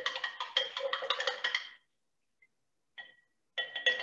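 A paintbrush rattling fast against a glass water jar, the glass ringing with each knock, for nearly two seconds. After a pause and a single tick, the rattling starts again near the end.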